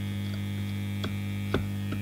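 Steady low electrical mains hum from the idle guitar rig and pedalboard, no guitar being played. Two short clicks break through about a second in and half a second later, the second louder, as the Boss TR-2 tremolo pedal's controls are handled.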